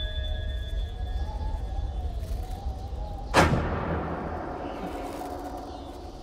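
Dramatic film-trailer music: a low drone under a held, slowly wavering tone, broken about three and a half seconds in by a single sudden loud boom that rings away.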